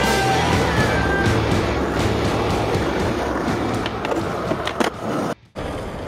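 Skateboard wheels rolling over street asphalt in a continuous rumble, with a couple of sharp clacks from the board about five seconds in.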